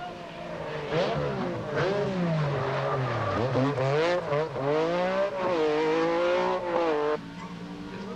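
Metro 6R4 rally car's engine revving hard through the gears as it passes and corners on a tarmac stage, its pitch swooping down and up several times. Near the end it cuts abruptly to a quieter, steadier engine note from another car.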